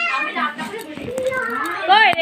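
Young children playing, their high-pitched voices calling and chattering.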